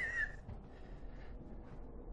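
A man's short laugh trailing off in the first half second, then quiet room tone with a few faint ticks.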